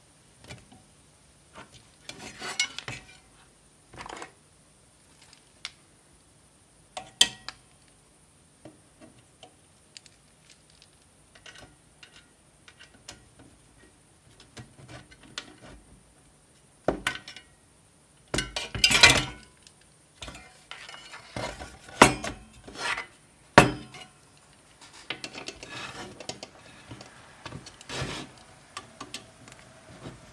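Handling noises of a steel ATX power supply case and hand tools: irregular clinks, clicks and knocks as the case is turned over and pliers and a screwdriver work against the case and its fan cover. The loudest knocks and a short scraping clatter come in a cluster a little past the middle.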